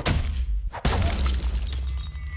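Movie fight sound effects: two heavy hits about a second apart, each followed by crashing, shattering debris, over a deep low rumble.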